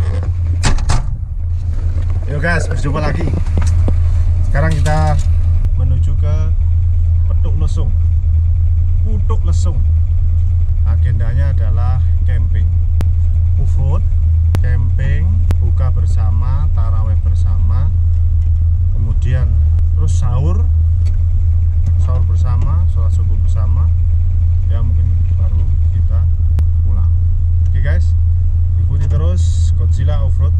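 A vehicle engine running with a steady low drone, heard from inside the cabin.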